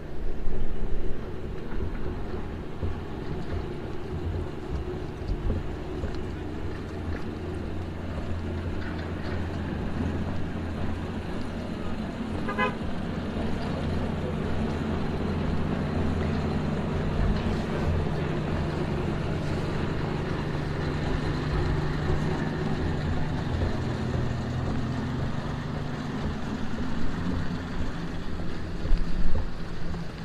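Street ambience with a vehicle engine running: a steady low drone that grows stronger through the middle, with a quick run of clicks about twelve seconds in.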